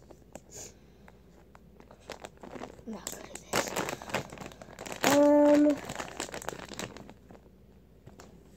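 Plastic soft-bait package crinkling and tearing as it is pulled open by hand, with a dense run of crackles through the middle. A boy's voice holds one short hum about five seconds in.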